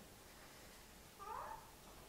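Near silence of a room, broken once about a second in by a short, faint, high-pitched call that rises and falls.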